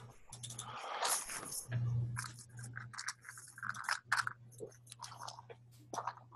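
Irregular small clicks and crunchy crackles over a steady low hum, heard through a video-call connection.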